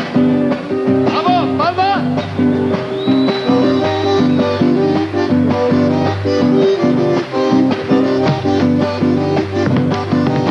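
Live Argentine folk band starting a chacarera: strummed acoustic guitars over a steady beat, with the bombo legüero drum in the group. A short gliding voice call comes about a second in.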